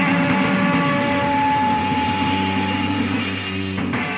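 Live heavy rock band holding a final chord at the end of a song: distorted electric guitar and bass ring out with long, steady sustained notes, starting to fade near the end.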